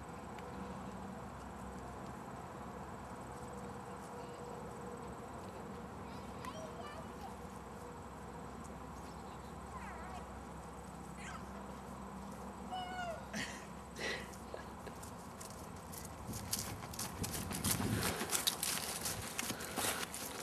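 Faint outdoor background with a few short, high, chirping calls. Near the end comes a run of crackling footsteps through dry grass and fallen leaves, growing louder.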